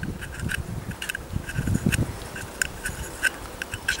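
A pin clicking and scraping against the brass jets of a Trangia spirit burner as it is pushed through them to clear blockages: a scatter of light, irregular clicks.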